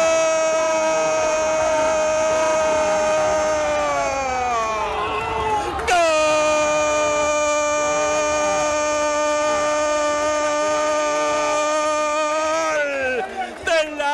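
A football commentator's long, drawn-out goal cry, a single shouted note held for about five seconds, then after a quick breath held again for about seven more, sagging in pitch at the end of each. Faint crowd noise runs underneath.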